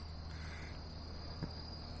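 Crickets trilling faintly in one steady high note, with a low hum underneath.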